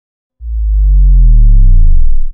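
A deep synthesized bass tone that starts about half a second in and swells louder while sliding upward in pitch: a riser sound effect leading into a channel logo reveal.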